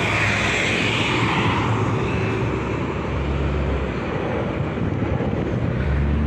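Steady motor-vehicle noise, engine rumble and road hiss from street traffic.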